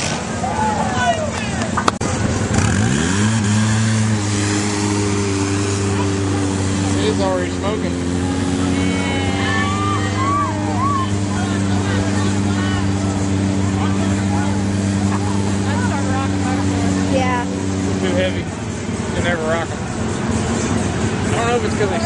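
Polaris RZR 800 side-by-side engine revving up about two seconds in, then held at a steady high pitch for about fifteen seconds while it pulls through the mud pit, before dropping off near the end.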